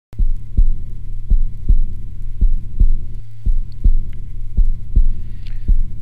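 Heartbeat sound effect: a slow double thump, lub-dub, repeating about once a second over a steady low drone.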